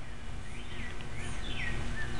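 A bird calling with short chirps that each fall in pitch, about two a second, over a steady low background rumble.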